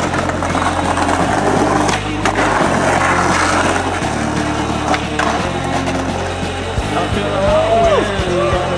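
Skateboard wheels rolling on rough pavement and asphalt, with a few sharp clacks of the board, over background music with a steady bass line.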